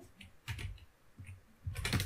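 Computer keyboard keys pressed a few times, as separate, spaced-out keystrokes.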